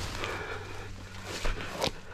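Footsteps and rustling through tall grass and brush, with two short crackles in the second half.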